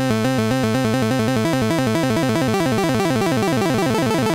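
Roland SH-101 monophonic analog synthesizer playing its arpeggiator, a rapid run of short repeated notes cycling through the held chord. The arpeggio gets faster as the rate control is turned up.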